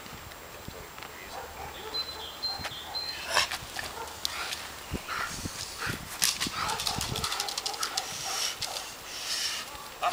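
Young male Belgian Malinois barking in agitation during bite work: a run of short, sharp barks, several a second, starting about three seconds in.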